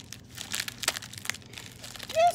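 Mail packaging crinkling as it is handled, with several short sharp crackles.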